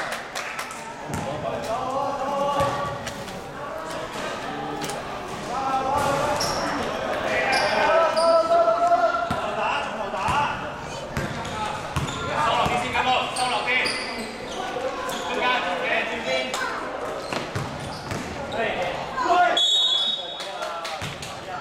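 Basketball bouncing and being dribbled on a sports-hall floor, with sneakers squeaking and players talking and calling out, echoing in the hall.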